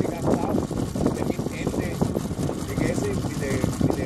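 People talking indistinctly, no words clear, over a steady low background noise.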